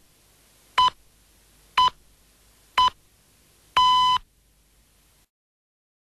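Radio time signal: three short beeps a second apart, then a longer final beep at the same pitch.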